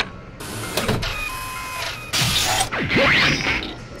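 Sci-fi machinery sound effects of the Eva's dummy plug system engaging: two short hissing bursts with steady electronic tones between them, then a sweeping whir near the end.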